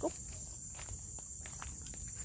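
Footsteps on a dirt path, a few soft scuffs and clicks, over a steady high-pitched insect trill.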